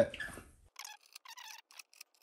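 Several faint, short scrapes and rustles of hands handling things at a wooden back panel.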